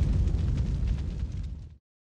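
Low rumbling tail of a cinematic boom sound effect under a channel logo outro, fading steadily and then cutting off abruptly near the end.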